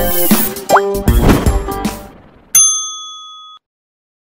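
End-screen jingle: drum-backed music with a short rising whoosh, fading out over about two seconds, then a single bright chime that rings for about a second and cuts off abruptly.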